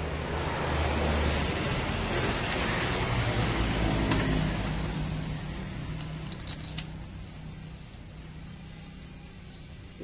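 A road vehicle passing by: a rumbling engine-and-road noise that swells in the first second, holds for about four seconds and then fades away. A few light metallic clinks sound about four seconds in and twice more around six and a half seconds.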